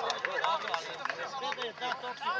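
Several people talking at once close by, voices overlapping and calling out.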